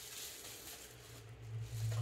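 Faint rustling of a small plastic packaging bag being handled and unwrapped. A low steady hum underneath grows louder about a second in.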